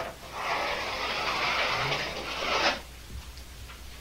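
Chalk scraping on a chalkboard as one long continuous stroke draws a large oval: a steady scratchy hiss lasting about two and a half seconds that stops abruptly.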